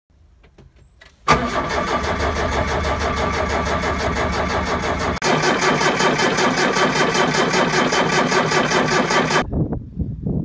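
Electric starter cranking a Perkins diesel forklift engine in two long stretches, turning it over evenly without it firing. The engine won't start because air has got into the fuel line through a hose that has slipped loose.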